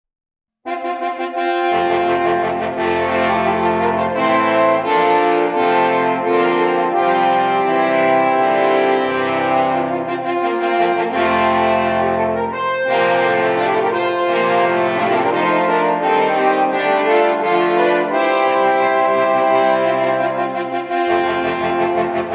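An ensemble of six French horns playing a bright fanfare at a moderate tempo, with quick sixteenth-note figures passed between the high and low horns. It starts just over half a second in, and the low horns join about a second later.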